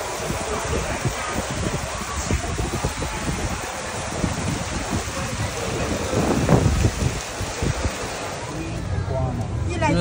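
Fast water rushing and churning down the concrete channel of a river rapids raft ride. It is a steady rushing noise with a low rumble, swelling louder about six and a half seconds in.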